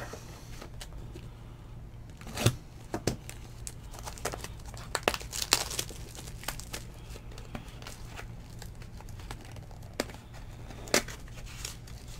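Plastic shrink wrap crinkling and tearing as it is peeled off a box of trading cards, in scattered sharp crackles over a low steady hum.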